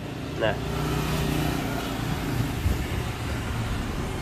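Makita 110 V corded drill motor spinning slowly on reduced voltage from a speed-controller module, getting a little louder over the first second as the voltage is turned up, then running steadily.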